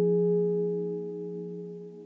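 A Eurorack modular synthesizer holding one soft chord of steady, pure-sounding tones that fades away slowly as the piece ends, with no drums.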